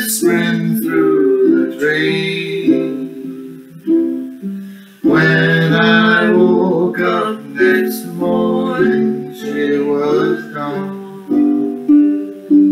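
Two ukuleles strummed together playing an early jazz tune, with a man singing phrases over them.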